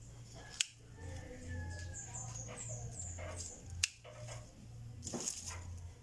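Faint, scattered animal calls over a low hum, with two sharp clicks, about half a second in and about four seconds in.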